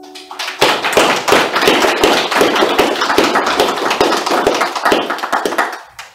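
Small audience applauding after a sung and played musical piece. The clapping builds up within the first second and stops near the end.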